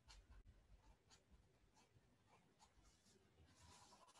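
Very faint strokes of a felt-tip marker writing on paper, a series of short scratches.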